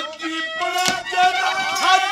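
A man's voice singing a Haryanvi ragni at the microphone over folk-music accompaniment, with a couple of drum strokes; from about a third of the way in a long note is held.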